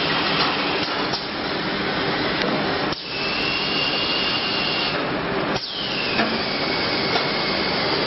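Shrink-wrap web sealer machine running: a steady rush of mechanical noise with scattered clicks and knocks. A high whine comes in about three seconds in, and after a short break returns and slides down in pitch.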